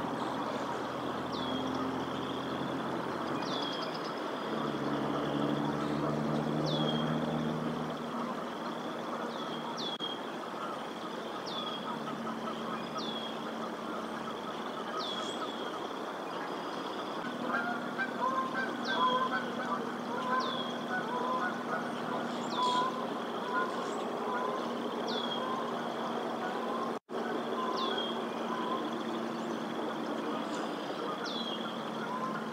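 Outdoor live-cam sound: a small bird repeats a short high call about every second and a half over a steady low engine hum. From a little past halfway, Canada geese honk in a rapid series for several seconds. The sound drops out for an instant near the end.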